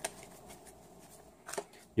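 A deck of tarot cards being shuffled by hand: a sharp snap of cards at the start, then two soft clicks of the cards about a second and a half in.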